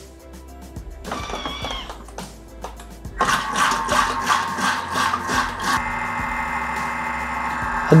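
Background music over a Thermomix TM6 kitchen machine starting to run its butterfly whisk at low speed, whipping egg whites. The music is the louder part.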